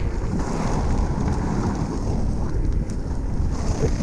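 Wind buffeting the camera's microphone over the steady rumble of 110 mm inline skate wheels rolling on asphalt.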